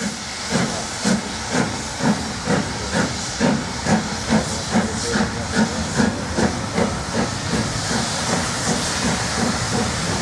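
Three-cylinder Jubilee class 4-6-0 steam locomotive 45690 'Leander' working a train away, its chimney exhaust beating about twice a second and quickening slightly, over a steady hiss of steam. The beats fade over the last few seconds as it draws away.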